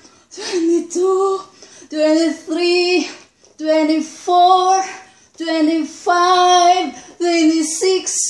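A woman's voice counting push-up repetitions aloud in a drawn-out, sing-song way, about one number a second, with short pauses between numbers.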